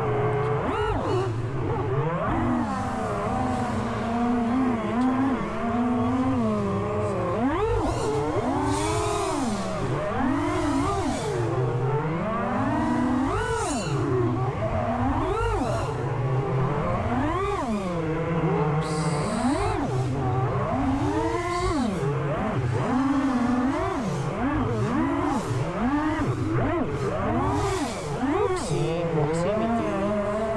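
Racing quadcopter's four prototype T-Motor 2505 1850 KV brushless motors and propellers running on 6S, heard from on board. Their pitch swings up and down over and over with rapid throttle changes during aggressive flying.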